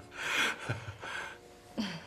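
A person's short, breathy exhalation, then a softer second breath about a second later, over faint background music; a brief voiced sound begins near the end.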